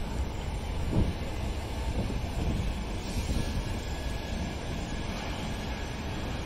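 Southern Class 455 electric multiple unit running past on the rails, with one sharp knock about a second in.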